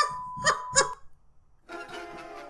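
A steady test-card beep at about 1 kHz over colour bars for the first second, with a man laughing twice over it. It cuts off, and after a short gap music starts near the end.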